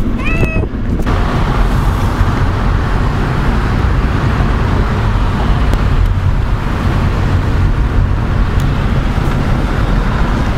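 Steady road noise inside a moving car: a heavy low rumble with a rushing hiss that comes up about a second in and holds evenly. A brief voice is heard at the very start.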